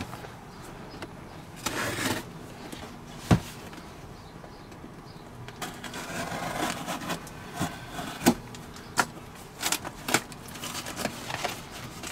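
Cardboard shipping box being opened by hand: a small blade cutting and scraping along the packing tape, with scattered sharp taps and knocks on the cardboard, then the flaps being pulled up near the end.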